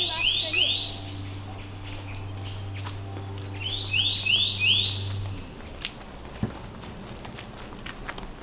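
A bird calling in two quick runs of three or four short rising chirps, one near the start and one about four seconds in, over a low steady hum that stops about five and a half seconds in.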